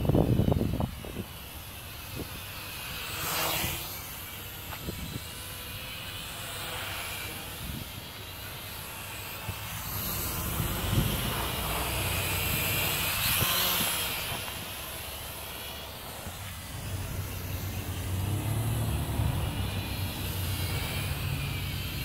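Small geared toy quadcopter's motors and propellers whining in flight, the pitch rising and falling with the throttle. It is loudest about halfway through as it passes close. Its motor gears run on newly fitted ball bearings.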